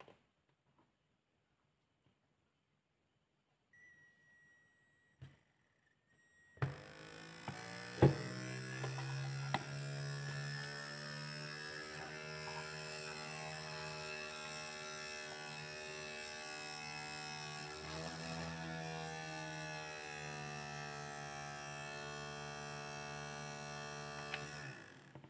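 Homemade single-coil brushless DC motor, driven by a two-transistor oscillator, starting up about six and a half seconds in and then running steadily at around 4000 RPM with an electric buzz and a high whine above it. A sharp click comes just after it starts.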